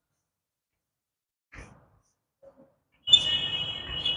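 Chalk on a blackboard, drawing a small diagram. A faint tap comes a little after a second in. About three seconds in there is over a second of chalk scratching with a steady high-pitched squeak.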